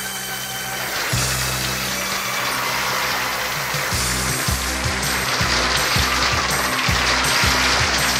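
Band playing the instrumental intro of a Christmas rock and roll medley: held low notes give way about a second in to a moving bass line under a steady wash of cymbals, growing slightly louder.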